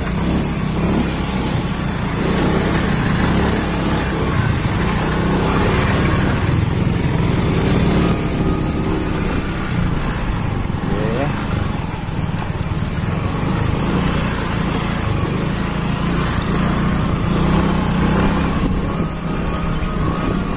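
Motorcycle engine running steadily at low speed with a continuous low hum, over the noise of riding on a rough dirt track.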